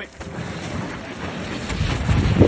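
Wind buffeting a phone microphone outdoors, a steady rushing noise heaviest in the low end that grows louder near the end, mixed with the scuff of boots and an inflatable snow tube moving over icy snow.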